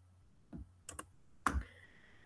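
A few faint, irregularly spaced keystrokes on a computer keyboard, about four clicks, the last one about one and a half seconds in the loudest, with a dull knock.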